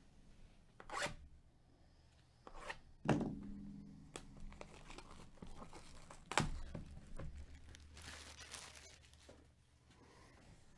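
Clear plastic shrink wrap being torn and pulled off a sealed trading-card hobby box, in several short rips with a longer tearing stretch near the end. Two louder knocks of the cardboard box being handled come about three and six seconds in.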